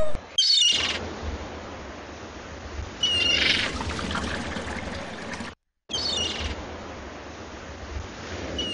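Seagull cries, three short calls a few seconds apart, over a steady wash of beach surf.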